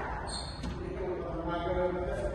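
A court shoe squeaks briefly on the wooden squash-court floor about a third of a second in, then a person's voice rings in the echoing hall.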